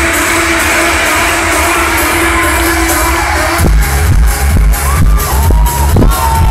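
Loud electronic dance music over a club sound system: a sustained, beatless build-up, then about three and a half seconds in a heavy bass kick drops in at about two beats a second with a gliding synth line.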